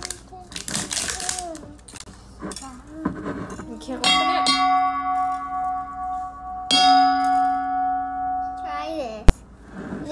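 A large stainless steel mixing bowl struck twice with a wire whisk, ringing like a bell for a couple of seconds after each strike. The ring wavers and dies away near the end, and a single sharp click follows.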